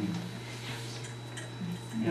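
A lull in the talk filled by a steady low electrical hum, with a faint click in the second half and brief faint voices near the start and near the end.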